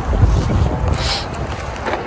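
Wind buffeting a handheld camera's microphone: a loud, uneven low rumble, with a couple of brief rustles about one and two seconds in.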